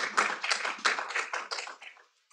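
Applause from a small audience: many hands clapping unevenly, thinning out and stopping near the end.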